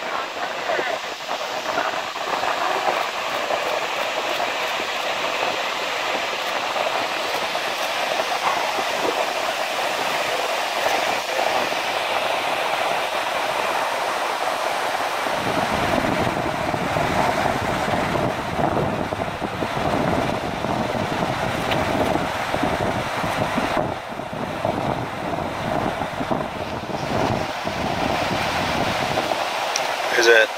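Small surf washing steadily over a rocky black-sand shore, an even rush of water. About halfway through, a low rumble of wind on the microphone joins in and continues.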